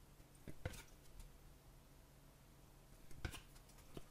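Faint handling of a stack of trading cards: cards slid and flicked in the hands, with short soft rustles about half a second in and again about three seconds in, near silence in between.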